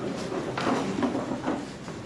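Hall ambience: an indistinct murmur of voices with scattered knocks and clatter from people moving about.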